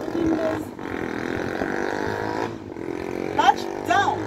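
A woman's voice making wordless sounds: a drawn-out vocal sound for a second or two, then two short sliding calls near the end.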